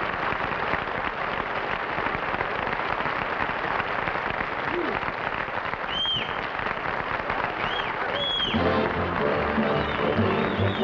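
Studio audience applauding and cheering, with a few shrill whistles about two-thirds of the way through. Near the end the studio orchestra strikes up the show's closing music over the applause.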